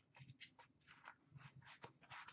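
Near silence with faint handling noise: a scatter of soft ticks and rustles as hands lift a card box out of a metal tin.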